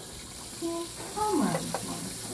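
Tap water running steadily into a sink. About halfway through, a man makes a short wordless vocal sound, a brief held note and then a falling 'ooh'.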